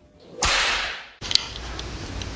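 A sudden sharp sound effect, like a whip crack, about half a second in. It dies away over about half a second, the highest part fading first. Then a faint click and a low steady room hum.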